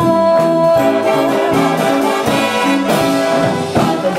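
Live jazz big band playing, brass section to the fore, with one long note held for about three and a half seconds over a pulsing beat.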